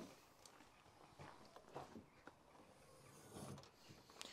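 Near silence, with a few faint clicks and knocks as the VW California Coast's tailgate is unlatched and lifted open.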